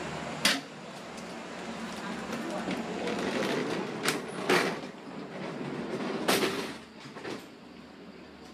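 Passenger train carriage door and its fittings clanking as someone walks through: several sharp knocks, the loudest about half a second in and again around four and a half and six seconds, over steady background noise with voices.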